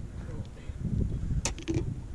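Low rumbling wind and handling noise on a body-worn camera's microphone, with one sharp click about one and a half seconds in and a few faint ticks after it.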